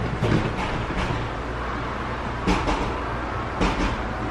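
Countertop blender running steadily while mixing a peach cocktail with ice. There is a knock right at the start and two more clunks, one about halfway through and one near the end.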